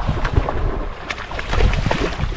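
Wind buffeting the microphone on an open boat deck, a heavy uneven rumble, with water noise and a few sharp light knocks.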